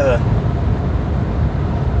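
Steady low road and engine rumble inside a moving Chevy Spark's cabin, heard while it drives along the highway.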